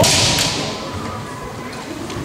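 Bamboo shinai striking in a kendo bout: a sharp crack right at the start, followed by a loud, high rushing sound that fades away over about a second.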